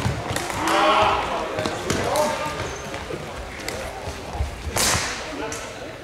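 Floorball play in a sports hall: players call out to each other without clear words, with sharp knocks of plastic sticks and the ball on the hard floor. The clearest knock comes about five seconds in.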